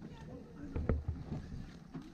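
Footsteps on asphalt with handling knocks on a handheld camera, an irregular run of low thumps with one sharper knock about a second in.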